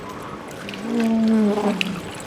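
A person's drawn-out, wordless vocal sound, held for about a second and sliding slightly down in pitch, over faint water sounds.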